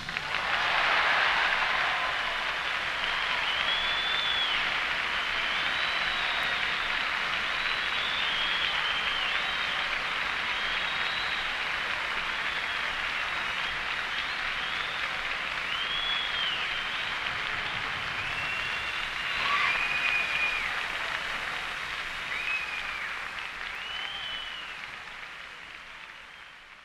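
Concert audience applauding on a 1938 live recording, with high rising-and-falling whistles breaking through the clapping again and again. The applause fades out over the last few seconds.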